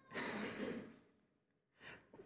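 A man sighing, a breathy exhale of under a second, followed near the end by a short, faint intake of breath.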